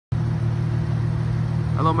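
Steady low hum of an idling vehicle engine. A man starts speaking right at the end.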